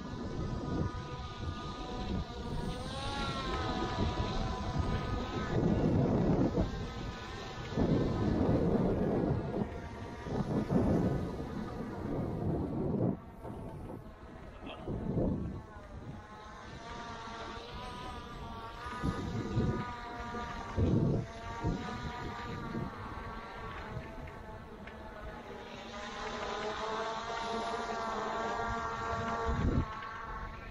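Skydio 2 quadcopter drone's propellers whining overhead, a steady multi-tone buzz that wavers gently in pitch as it flies and tracks. Gusts of wind rumble on the microphone several times.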